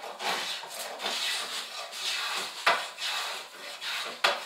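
Hand edge tool shaving a curved wooden boat timber: a series of scraping strokes, roughly one or two a second, with a sharper stroke near the middle.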